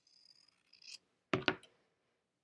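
Kai fabric scissors cutting through layered quilting cotton: a faint slicing hiss, then two sharp clicks in quick succession about a second and a half in.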